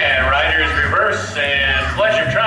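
A horse whinnying in two long quavering calls, the second beginning about a second and a half in, over steady background music.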